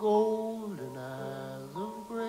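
A man singing long, drawn-out notes in a live concert, the pitch sliding down about a second in and rising again near the end, over piano.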